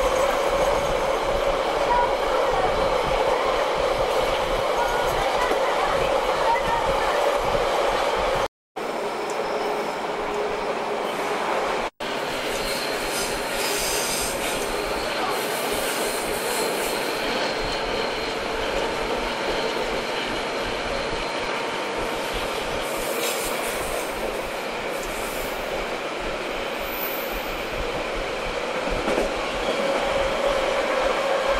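A passenger train running on the rails: a steady running noise with a faint, constant squealing tone. The sound cuts out briefly twice, about a third of the way in, at the splices between clips.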